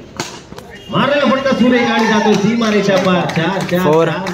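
A cricket bat striking the ball once, a sharp crack just after the start, followed by a man's voice calling out loudly for most of the rest.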